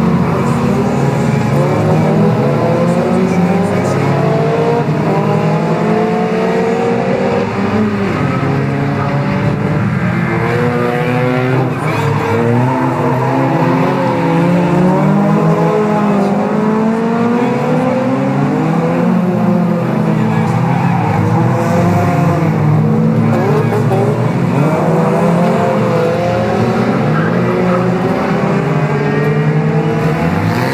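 Several 1600cc autocross cars racing on a dirt track, several engines revving up and down at once, their notes constantly rising and falling and overlapping as the cars go through the bend and past.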